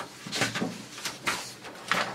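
Sheets of paper rustling as they are handled and held up, in several quick rustles.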